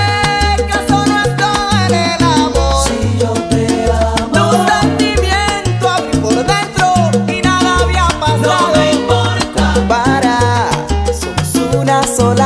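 Salsa romántica music playing loudly and without a break: a repeating syncopated bass line under shifting melodic lines.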